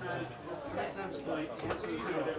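Murmur of several people talking at once in a room, overlapping chatter with no single clear voice, with a few light clicks or knocks, the clearest near the end.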